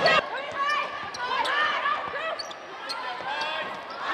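Basketball game on a hardwood court: sneakers squeak in short chirps and a basketball bounces, with a sharp knock right at the start.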